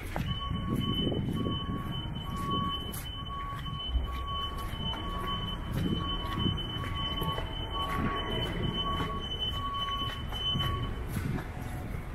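An electronic alarm or warning beeper: a steady high tone with a lower beep repeating about every 0.6 s. Both stop together near the end. Footsteps and street noise run underneath.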